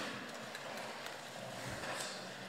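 Faint room tone of a large hall, a steady low hiss with no voices, and a soft low thud near the end.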